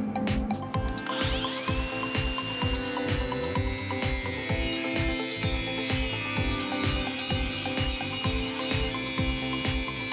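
Background music with a steady beat, over which an angle grinder spins up with a rising whine about a second in and then grinds steadily along the edge of a steel plate, cutting the groove for a groove weld.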